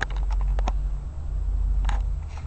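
Handling noise from a handheld camera: a steady low rumble with scattered clicks and taps.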